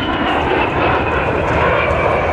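Fairchild Republic A-10 Thunderbolt II's twin General Electric TF34 turbofan engines passing overhead: a steady roar with a whine that slowly falls in pitch.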